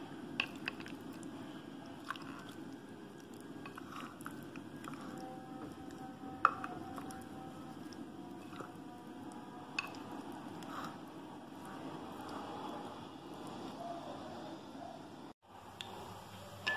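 Raw prawns in a thick wet masala marinade being stirred by spoon in a glass bowl: soft squishing, with a few sharp clicks of the spoon against the glass, the loudest about six and a half seconds in.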